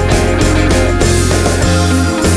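Instrumental passage of a rock song: guitars, bass and drums playing with no singing.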